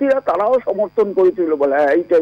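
Speech only: a caller talking in Bengali over a telephone line, with a steady electrical hum under the voice.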